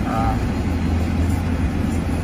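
Steady low rumble of a 2016 Cadillac Escalade's 6.2-litre V8 idling, heard inside the cabin.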